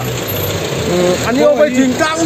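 Men talking in Mizo at close range over the low, steady hum of an idling vehicle engine, which fades partway through.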